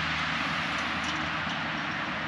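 Steady outdoor background noise: an even rushing hiss with a faint low hum underneath, unchanging throughout.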